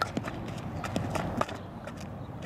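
Quick knocks and scuffs of a softball infielder fielding a ball and stepping into a throw: cleated feet on the infield dirt and the ball striking the glove. There are about six short knocks, and the loudest comes about one and a half seconds in.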